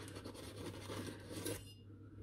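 Metal spoon scooping flour from a paper flour bag: soft scraping and rustling of the paper that fades about a second and a half in.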